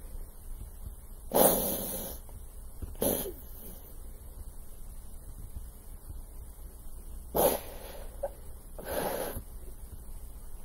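A man breathing heavily: four loud, noisy breaths spaced a few seconds apart, with no speech between them.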